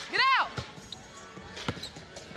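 A basketball dribbled on a hardwood court, with two sharp bounces about a second apart, after a short shout.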